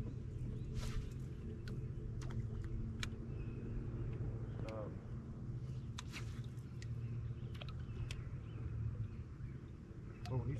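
A boat motor running at low speed with a steady low hum, and scattered sharp clicks and ticks over it.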